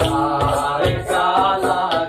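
Bengali folk song: a sung melody with drawn-out, wavering notes over regular hand-drum beats.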